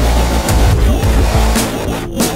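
Loud dubstep instrumental: a heavy synth bass with stacked, gliding synth tones over a beat of recurring drum hits.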